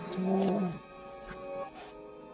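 Orchestral film score played in reverse, with steady held notes. About a tenth of a second in, a loud short pitched call lasts just over half a second and drops in pitch as it ends.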